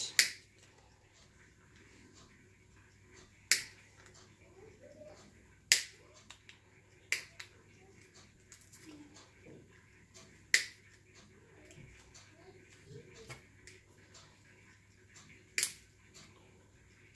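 Side-cutter pliers snipping at a small plastic part, giving about six sharp clicks at irregular intervals a few seconds apart, with fainter ticks between.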